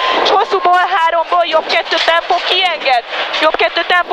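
A rally co-driver's voice reading pace notes in Hungarian, rapid and unbroken, with short bursts of noise at the start and about three seconds in.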